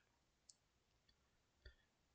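Near silence, with two faint computer mouse clicks, one about half a second in and one near the end.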